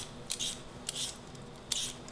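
Hand vegetable peeler scraping strips of skin off a raw potato in quick top-to-bottom strokes, about four in two seconds.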